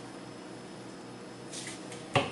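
Quiet, steady room tone: a low hum under an even hiss, with a faint brief rustle near the end.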